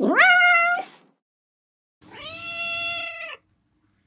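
Domestic cat meowing twice: a first call that rises in pitch and then holds, and a steady second meow about two seconds in.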